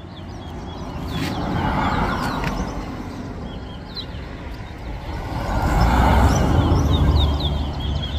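Two vehicles pass by on the street, each swelling and fading away, the second louder, about six seconds in. Short, high bird chirps sound over them and come more quickly near the end.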